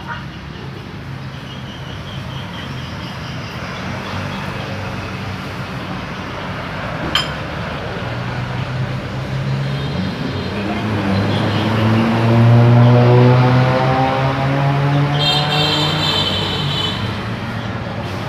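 A motor vehicle engine rises in pitch and grows louder from about halfway through, is loudest a little past two-thirds of the way, then holds steady over a constant noisy background. A single sharp click comes a little before halfway.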